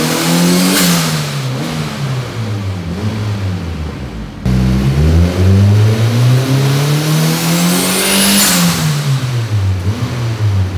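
Turbocharged Honda B18 non-VTEC four-cylinder running under part throttle on a hub dyno, its revs falling, then climbing again and dropping off about eight seconds in. A high whistle rises with the revs just before they drop.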